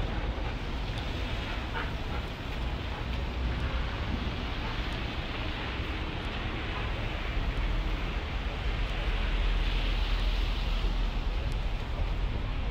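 Steady rushing noise with a heavy low rumble, typical of wind buffeting the microphone outdoors. It runs unbroken, swelling a little near the end.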